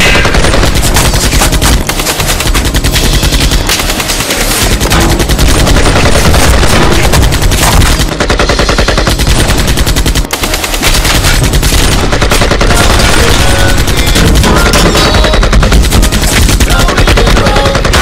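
Rapid automatic rifle fire, shot after shot in long bursts that overlap almost without a break, with short lulls about two seconds in and again about ten seconds in.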